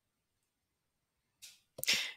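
Near silence, then near the end a short breathy intake of breath followed by two small mouth clicks.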